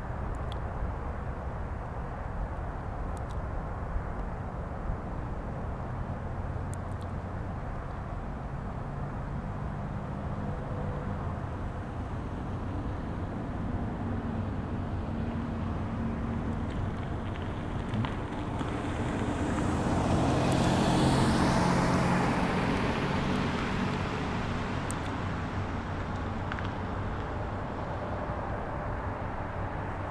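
A car passing by on a nearby road. Its engine and road noise build from about a third of the way in, are loudest about two-thirds through, then fade away over a steady low rumble.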